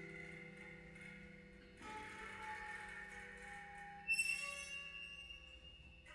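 Quiet improvised music from a grand piano played standing, the pianist reaching into the instrument: held notes ring and fade, a new note enters about two seconds in and slides slightly down, and a sharp struck sound about four seconds in leaves a bright, high ring.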